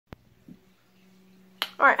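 A sharp click right at the start and another about a second and a half in, with a faint steady hum between, before a woman says "all right."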